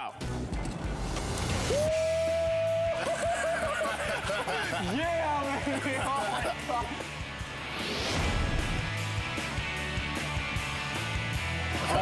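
Background music with a steady beat, with a long held vocal note and excited voices over it, and a rising whoosh about eight seconds in.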